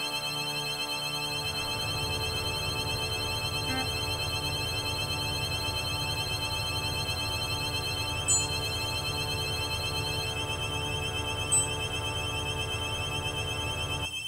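Electronic drone: a chord of many sustained steady tones over a low pulsing throb, with two short high pings, one about eight seconds in and another about three seconds later.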